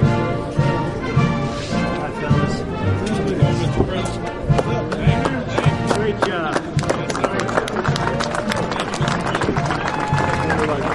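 Brass band music playing over a crowd. From about four seconds in the music thins out and a rapid scatter of sharp clicks runs over it.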